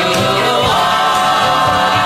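Early-1960s pop record playing: a vocal group singing held notes in harmony over the band, with no lead vocal in these seconds.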